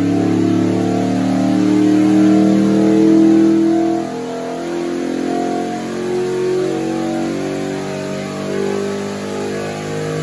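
Skip White Performance 555 cubic-inch V8 running under load on an engine dynamometer during an acceleration pull, its revs climbing steadily from about 4,100 to 6,100 rpm. The sound drops slightly in loudness about four seconds in.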